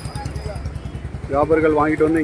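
A vehicle engine idling with a steady low, rhythmic chug. A man's voice comes in over it a little past halfway.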